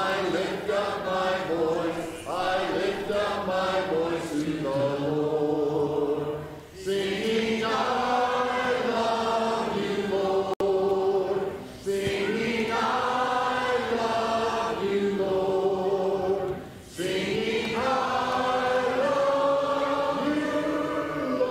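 A congregation singing a hymn together without instruments, in long held phrases with short breaks between lines.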